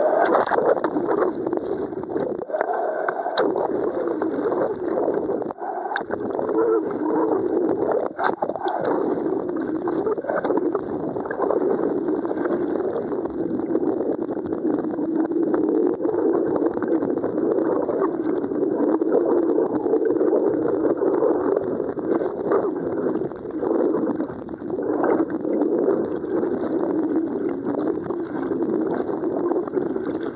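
Churning river whitewater heard muffled from inside a waterproof camera housing that is mostly underwater: a steady, loud low rushing, with a few sharp knocks in the first ten seconds.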